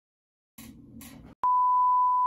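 Steady single-pitch test-tone beep of the kind played with TV colour bars. It starts about one and a half seconds in, after a moment of dead silence and faint background hiss.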